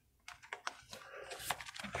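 Baseball cards being slid into the pockets of a plastic binder page: a few light, scattered clicks and ticks of card edges against the plastic sleeve, with a faint rustle between.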